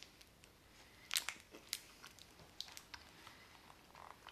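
Faint chewing of a crispy, oaty WW Lemon Meringue bar: scattered short crunches and crackles, the loudest a little over a second in. Light rustling of the wrapper and cardboard box being handled near the end.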